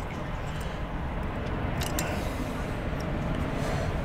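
A steady low rumble, with a couple of faint metallic clicks about two seconds in from a screwdriver working on a sailboat winch.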